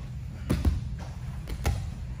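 Dull thuds of bodies and limbs landing on a foam grappling mat during a jiu-jitsu drill: four quick impacts in two pairs about a second apart.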